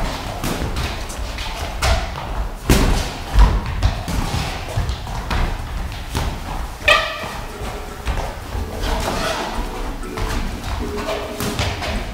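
Irregular thuds of padded boxing gloves landing and feet stepping on the ring canvas during sparring, a few hits standing out louder.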